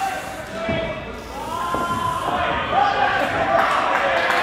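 Players calling out to one another across a large indoor cricket hall, in long drawn-out shouts, with a few sharp knocks of the ball in the first two seconds.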